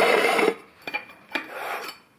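Aluminium motorcycle primary chain cover being slid and scraped by hand across a metal bench top: one louder rasping scrape, then a few shorter, quieter ones.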